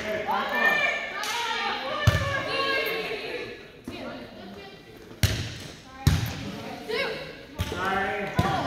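A volleyball in play in a gym: four sharp smacks of the ball, about two seconds in, at about five and six seconds, and near the end, amid players' voices.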